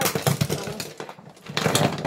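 Small plastic makeup items rattling and clattering as a makeup bag is handled, a dense run of clicks and rattles that is loudest near the end.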